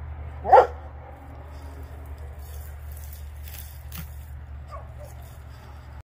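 A Rottweiler gives a single loud, short bark about half a second in.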